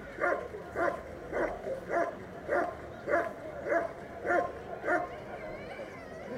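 German Shepherd barking at a protection helper in the hold-and-bark, a steady run of nine evenly spaced barks, a little under two a second.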